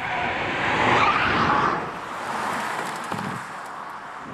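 A car passing at speed, its tyre and road noise swelling about a second in, then fading away.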